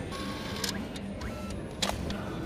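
Airport check-in kiosk's bag-tag printer feeding out a printed luggage tag: a steady mechanical whir with short sharp clicks, the loudest near the end.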